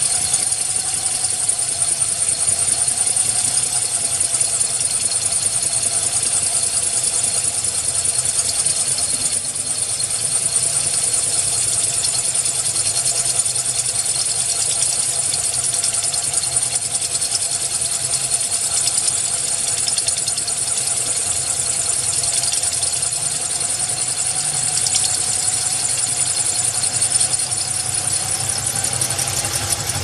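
Handheld power drill running steadily with a 1/4-inch glass bit grinding into 6 mm glass: a held whine with a slight waver over a strong high hiss, without a break.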